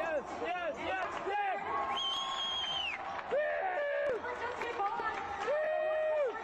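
Voices shouting and calling out over crowd noise in an indoor arena, with a couple of drawn-out held shouts.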